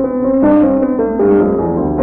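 Solo piano playing a classical piece, a steady run of notes, on a home recording made in 1980.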